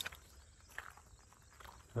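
Quiet outdoor background noise in a pause between words, with a faint low rumble and a single faint tick just under a second in.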